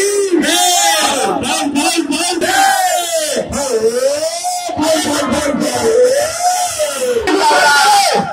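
A man's voice amplified through a microphone and loudspeaker, calling out in long, rising and falling, sing-song phrases over a crowd.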